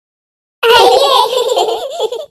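Cartoon characters laughing in high-pitched voices. The laugh starts about half a second in, after a brief silence.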